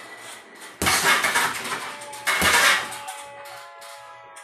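Two blows land on an RDX heavy bag about a second and a half apart, each a short thud followed by a jangle of the bag's hanging chains.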